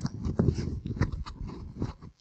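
Clip-on lavalier microphone handled at close range as it is adjusted on a shirt collar: a dense, irregular run of rubbing, scratching and knocking noises, with heavy thumps. The mic is misbehaving and keeps doing "this weird thing."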